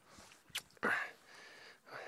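A man's short exhale through the nose about a second in, preceded by a small click, over a faint steady background.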